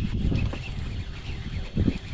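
Wind buffeting the microphone, a low rumbling that swells near the start and again just before the end.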